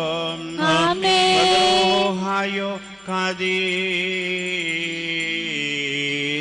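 Male voices chanting a church liturgy in long held notes, the melody gliding up and down over a steady lower note.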